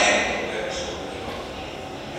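A voice from a recorded stage performance played over the hall's loudspeakers, trailing off in the first half-second into quieter sound with a brief hiss-like flicker.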